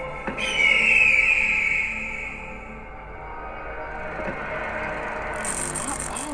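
Cinematic trailer soundtrack: a sudden high screeching tone about half a second in that slowly falls in pitch and fades, over a steady low drone, with a high hiss coming in near the end.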